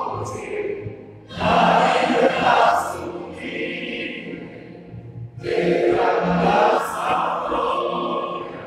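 Recorded choir singing with musical accompaniment, played through the room's speakers, in phrases with short breaks between them.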